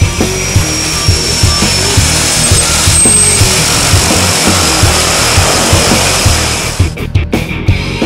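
The turboprop engines of a Twin Otter jump plane running with a high whine and a steady rush, laid over a rock music track with a regular drum beat. The engine noise cuts off suddenly near the end.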